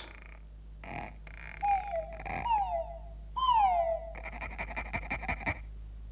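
Stop-motion cartoon character sounds: a froglet's croaking, buzzy chatter. Three falling whistle calls come in the middle, and a fast run of rattling clicks follows near the end.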